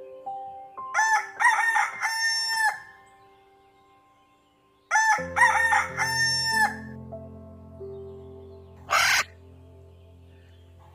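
Rooster crowing twice, each a multi-part cock-a-doodle-doo lasting about two seconds, with a pause of a couple of seconds between them.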